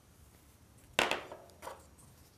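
A sharp knock about a second in, then a smaller one, as hands and beading things meet the tabletop.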